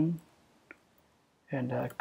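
A single faint computer-keyboard keystroke click, between stretches of speech.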